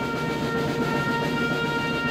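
Brass band music holding one long, steady chord.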